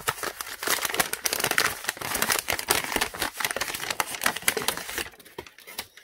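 Brown kraft paper crinkling and crackling as it is unwrapped by hand from an aluminum bullet mold half. The crackle dies down about five seconds in, leaving a few faint clicks.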